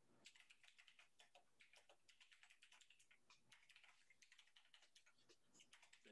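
Faint typing on a computer keyboard: a quick, irregular run of light keystrokes, many per second.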